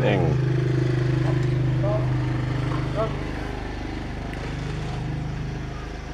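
A steady low mechanical hum, like a motor running, holding a constant pitch throughout and easing slightly in the second half.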